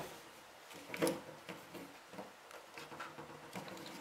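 Faint handling noises: light taps and rustles as a plastic cordless-drill battery pack is picked up and moved on a wooden bench, the loudest knock about a second in.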